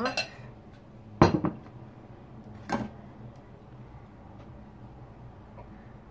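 A glass mixing bowl and metal fork set down on a countertop: one loud sharp clink about a second in, then a lighter knock near three seconds.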